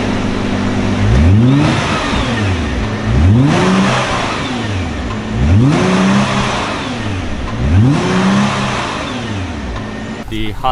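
Stock exhaust of a 2017 Nissan GT-R R35's 3.8-litre twin-turbo V6, with its factory catalytic converters, resonator and rear muffler, idling and revved four times. Each rev rises quickly in pitch and falls back to idle, about every two seconds.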